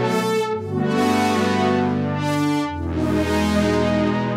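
Nord Lead 4 virtual analog synthesizer playing a pad through its ladder TB filter: sustained chords that change a few times. The tone brightens and then darkens with each new chord.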